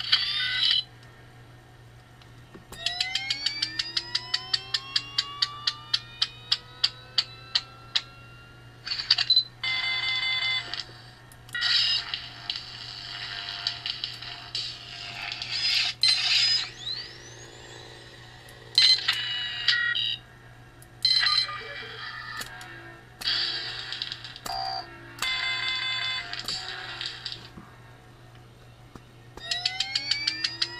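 Lightsaber sound-font effects played through a TeensySaber V3 hilt's small speaker over a steady low hum. A quick run of electronic ticks climbs in pitch, then a series of buzzy electronic bursts about a second each follows, with one tone sliding upward partway through.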